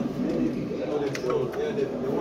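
Indistinct low voice talking, too unclear for words, with a sharp click about a second in.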